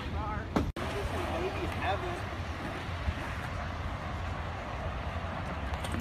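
Steady low wind rumble on a phone microphone, with faint voices talking in the distance now and then. The sound drops out for an instant just under a second in.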